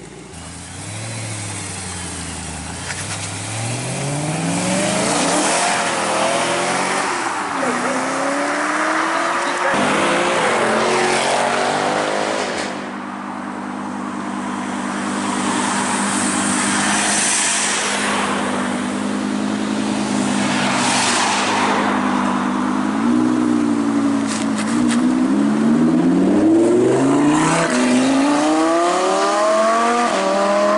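Car engines revving and accelerating one after another, their pitch climbing and falling again and again, with a steadier engine note through the middle stretch.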